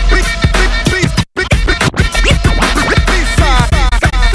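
Hip hop intro music: a heavy bass beat with turntable scratching, many short back-and-forth pitch sweeps. The music drops out for a split second a little over a second in.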